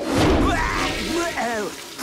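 A sudden burst of noise with a deep low thud, then an animated alien's wordless cry that falls in pitch, lasting about a second.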